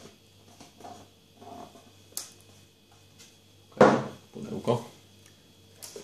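Hands handling a cardboard phone box and the plastic-wrapped phone in its tray: faint scrapes and clicks, with a sudden louder handling noise about four seconds in and a few smaller ones just after.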